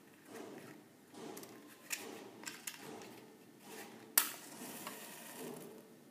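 A matchbox being handled and slid open, with a few small clicks as a match is taken out, then the match struck on the box about four seconds in: one sharp scrape, the loudest sound, followed by a brief hiss as it flares.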